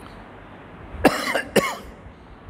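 A man coughing twice, two short coughs about half a second apart, starting about a second in.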